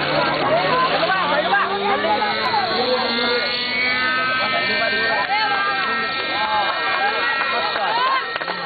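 Raptor 30 nitro RC helicopter's glow engine and rotor spooling up, the pitch rising steadily over the first few seconds and then holding as it lifts off, under loud crowd chatter.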